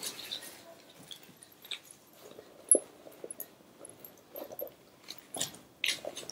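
Quiet rummaging through a handbag pocket: faint rustling with scattered small clicks, the sharpest about halfway through.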